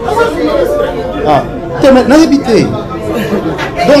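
Speech: people talking, with voices overlapping.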